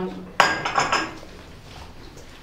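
A single sharp clink with a short ring about half a second in, then quiet room tone.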